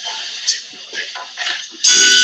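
A band playing toy classroom instruments, such as xylophone and melodica, starts up loudly near the end with steady held notes. It follows faint hiss with a few small knocks.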